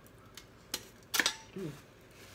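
Eating noises of a person taking a forkful of fried rice: a few sharp clicks, then a louder click-like burst a little past a second in. A short hummed "mm" follows near the end.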